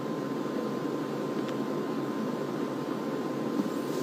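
Steady low background hum of room noise, with a faint steady high tone over it.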